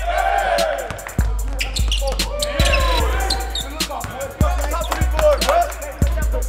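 Basketballs bouncing on a hardwood gym floor in a series of sharp thuds, over music with a deep, heavy bass line. Voices are also faintly in the mix.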